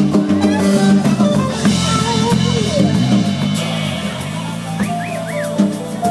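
Live band playing: electric guitar over drum kit, with keyboard and percussion in the mix.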